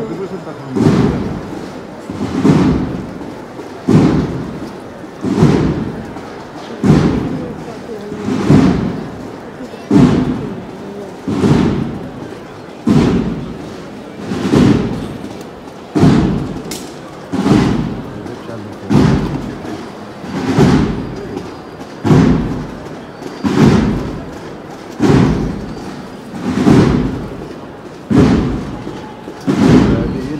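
A slow, steady drum beat, one heavy stroke about every second and a half, each ringing out before the next, keeping the pace of a Holy Week procession throne.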